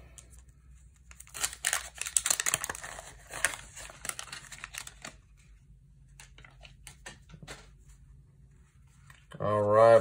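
Paper wrapper of a 1990 Fleer basketball card pack being torn open and crinkled for about four seconds, followed by a few light ticks as the cards are handled.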